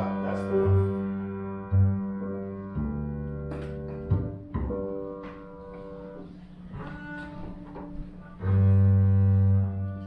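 Upright double bass playing scattered low notes, with a long held note about eight and a half seconds in, while sustained piano chords ring above it.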